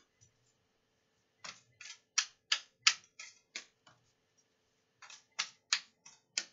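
A deck of reading cards being shuffled by hand: a run of crisp card slaps, about three a second. They stop for about a second, then three more follow.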